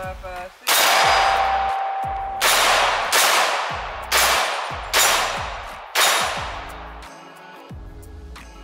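Six rifle shots fired one at a time, the first about half a second in and the other five coming roughly once a second from about two and a half seconds in. Each shot has a long echo that dies away over about a second.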